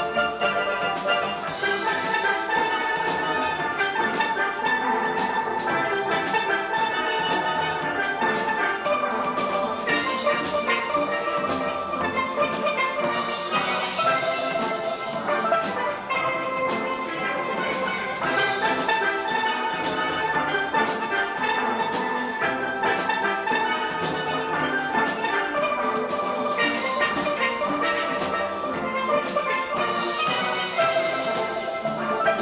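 A steel band of many steelpans playing a lively calypso-soca tune, the oil-drum pans struck with rubber-tipped sticks, giving dense ringing chords and a running melody at a steady volume.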